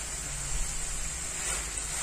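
Masala-coated chicken sizzling steadily in a frying pan over a gas flame, its juices cooking off as it fries dry.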